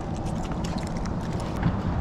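A few light knocks and rattles as a pinfish on a multi-hook sabiki bait rig is swung aboard onto the boat's deck, over steady wind and water noise.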